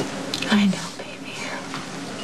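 Breathy, whispered vocal sounds from a tearful woman, with a short voiced catch of the breath about half a second in.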